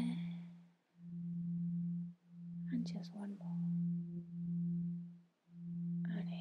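A steady low pure tone that swells and fades in stretches of about a second and a half, like a meditation drone. About three seconds in there is a deep breath through the mouth.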